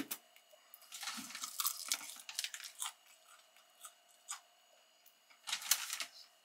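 Close-up crunchy chewing of crisp fried chicken, a run of crackling crunches starting about a second in and thinning out after about three seconds, followed by a few faint isolated clicks.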